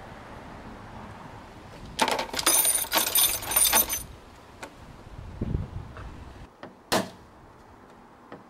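Small metal parts clinking and jingling together for about two seconds, then a single sharp click near the end.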